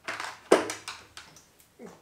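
Clicks and light clatter of hard plastic and metal parts being handled while rummaging in a plastic parts organizer for a small gear motor, with the sharpest click about half a second in.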